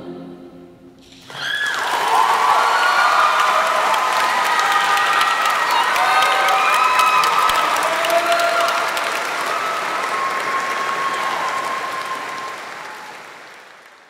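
A choir's held final chord dies away. Then, about a second in, applause breaks out with cheering voices calling over it, and it fades away near the end.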